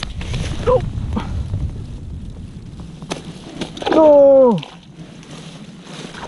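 Low rumble of leaves and grass brushing against a body-worn camera as the wearer pushes through weeds, with a short voice sound about a second in. About four seconds in comes the loudest sound, a man's loud drawn-out cry falling in pitch, most likely in dismay at a fish lost.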